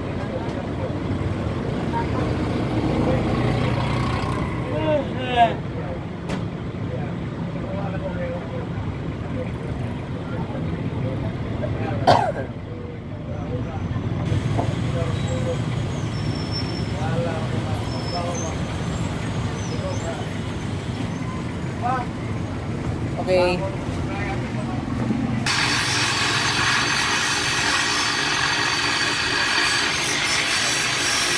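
Street traffic with motorcycles passing and voices in the background, with a sharp knock about twelve seconds in. Near the end a spinning grinding wheel starts grinding a small hand-held part, a loud, even grinding noise.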